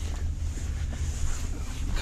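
Steady low rumble with a light, even hiss and no distinct events.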